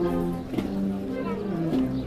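Wind band (banda de música) playing a slow processional march, with held low brass chords shifting every half second or so.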